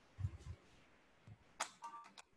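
Quiet, with a few faint, soft low knocks in the first half second and a short, sharp click a little past the middle.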